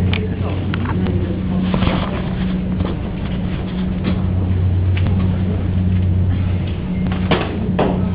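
A steady low hum runs under short scrapes and knocks as potting mix and pumice are pressed down and levelled in a pot.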